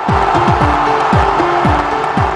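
Electronic ident music for a TV sports show, starting suddenly with a quick run of falling bass sweeps and short held notes over a dense noisy wash.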